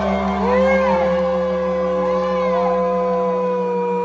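Live rock band holding a long closing chord, electric guitar, bass and keyboard sustaining steady notes at full volume, with short rising-and-falling cries above it.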